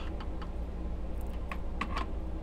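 A few scattered key taps on a laptop keyboard, over a steady low hum.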